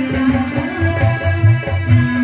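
Kirtan music without singing: steady held notes over a rhythm of low drum strokes.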